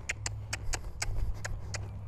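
Friesian horse under saddle stepping his hindquarters around in soft arena sand, with light, regular clicks about four a second over a steady low rumble.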